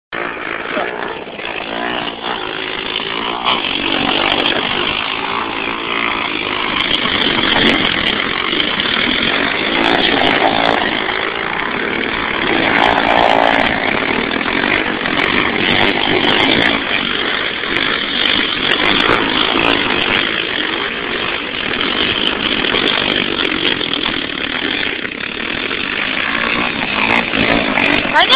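Small quad ATV engine running hard, its buzzing rising and falling in waves as it spins circles in snow.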